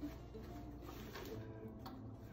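Faint rustle of three-strand rope as strands are tucked under in a flat braid, over a steady low hum, with a small click near the end.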